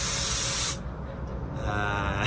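Steady low rumble of a Volvo 9600 coach on the move, heard from the driver's cabin, under a loud hiss that cuts off sharply about three quarters of a second in.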